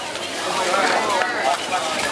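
Indistinct talking from people around the competition field, over steady background noise from the hall.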